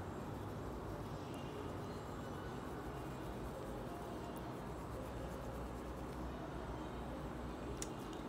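Steady low background hum, room tone, with a couple of faint ticks, one near the end.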